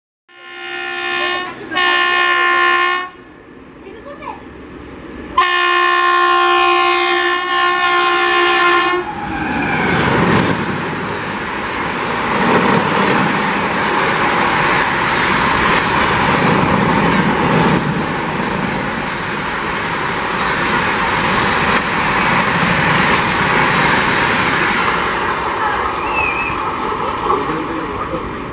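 Electric locomotive horn sounding two short blasts, then one long blast. It is followed by a high-speed passenger train of LHB coaches running through at about 130 km/h: a loud, steady rush of wheel-and-rail noise with clickety-clack that slowly fades near the end.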